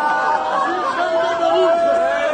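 A man's voice chanting a Shia mourning lament, drawing out long held notes, with a steady held note in the second half.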